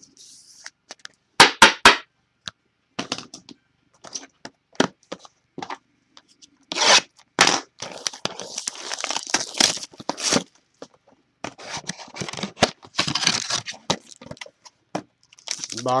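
Cardboard trading-card boxes being handled, with a few sharp knocks in the first two seconds. Then a long run of tearing and crinkling as a box is torn open and its foil-wrapped pack is handled.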